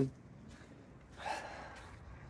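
A man's short, breathy gasp or exhale a little over a second in, between otherwise quiet outdoor background.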